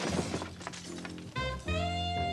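A rough, noisy crash-like clatter in the first second, then soundtrack music comes in about a second and a half in with a jazzy brass phrase of short sliding notes.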